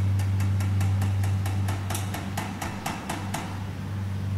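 Rapid typing on a keyboard, about six key clicks a second for some three and a half seconds, then stopping shortly before the end, over a steady low hum.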